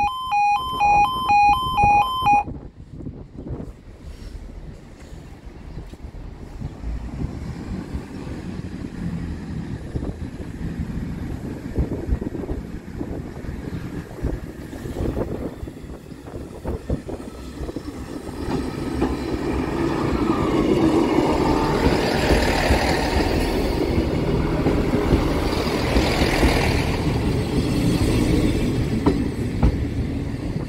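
A level crossing's two-tone alarm pulses for a couple of seconds and cuts off as the barriers finish lowering. A diesel multiple-unit train then approaches and runs over the crossing, its engine and wheels building to a rumble with clicks over the rail joints, loudest in the last third.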